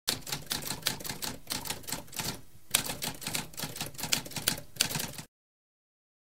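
Typewriter typing: a quick run of key strikes, a brief pause about halfway, then another run that stops about five seconds in.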